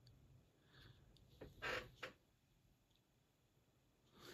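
Near silence: room tone with a few faint, brief clicks a little over a second in, then dead quiet.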